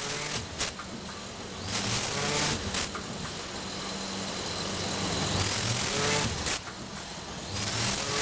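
Vertical form-fill-seal packaging machine running through its cycles: short rising motor whines as the film is pulled down, with repeated clacks and stretches of hiss.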